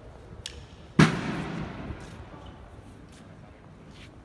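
A single loud bang about a second in, with an echo that dies away over about a second.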